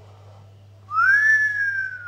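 A person whistling one long note, starting about a second in, with a quick swoop up and then a slow downward slide in pitch.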